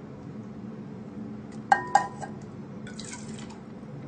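Two quick clinks on a drinking glass, about a quarter second apart and ringing briefly, then a short burst of watery noise about three seconds in.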